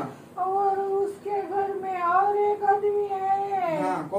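A woman's high, drawn-out wailing voice: long held notes that waver in pitch, two or three in a row with short breaks for breath, the last one sliding downward near the end.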